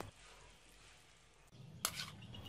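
Near silence: faint room noise, with one short sharp click near the end.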